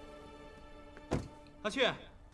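Soft instrumental drama music fading out, a single thud about a second in, then a man's voice calling "Ah Xu" with a falling pitch near the end.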